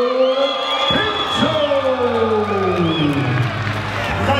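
A ring announcer's long, drawn-out call through the PA, falling slowly in pitch over about two seconds, with a crowd cheering and whooping underneath.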